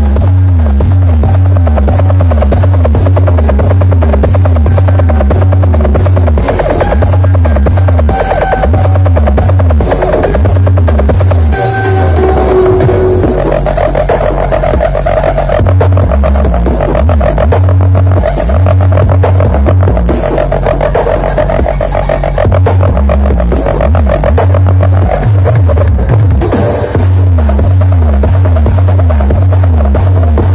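Electronic dance music played very loud through a large carnival sound system, with heavy, pulsing bass and a repeating swooping synth line.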